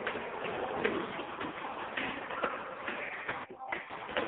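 Indistinct voices over a dense, noisy background with scattered small clicks, which briefly drops away about three and a half seconds in.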